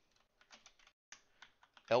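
Computer keyboard being typed on: an irregular run of separate key clicks.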